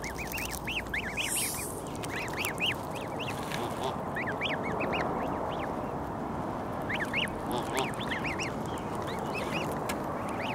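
Canada goose goslings peeping: many short, high, rising-and-falling peeps in quick clusters, with a brief lull in the middle, over steady low background noise.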